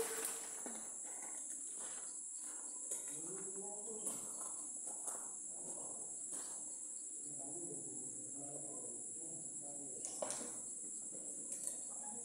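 A steady high-pitched hiss runs throughout, with a few light clicks and taps and faint voices in the background.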